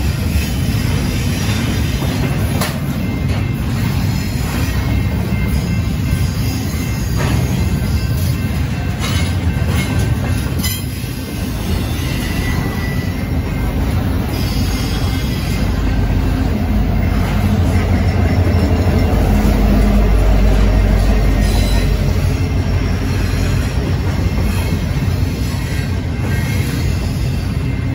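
Double-stack intermodal container train passing at speed: a steady rumble of wheels on rail with sharp clicks and a brief high wheel squeal. It grows louder in the second half.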